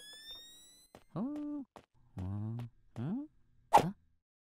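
A cartoon instant camera's flash charging with a rising electronic whine in the first second. Then three short wordless vocal sounds from a cartoon character, and a brief sharp burst near the end.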